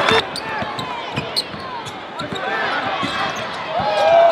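A basketball being dribbled on a hardwood court, bouncing repeatedly, over the murmur of an arena crowd.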